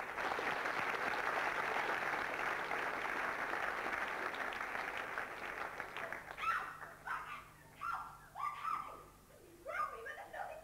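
Audience applauding after an orchestral number, dying away about six seconds in; short, high vocal cries from the performers on stage follow in quick succession.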